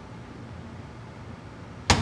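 Low room tone, then a door slams shut near the end: one sudden loud bang with a short ringing tail.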